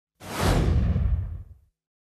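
A whoosh sound effect over a deep rumble, swelling in within a fraction of a second and dying away by about a second and a half.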